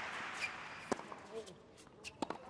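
Tennis rally on a hard court: crowd noise dying down, then one sharp crack of a racket striking the ball about a second in.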